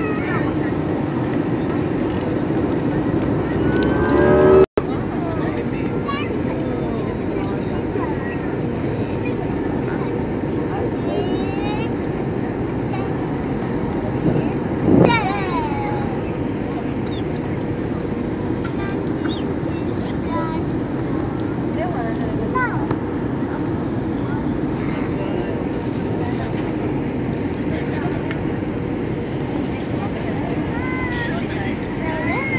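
Steady jet airliner cabin noise, engine and rushing air, inside an IndiGo Airbus A320-family jet on low approach, with faint scattered voices. A louder rising sound about four seconds in cuts off suddenly, and a brief louder sound comes about fifteen seconds in.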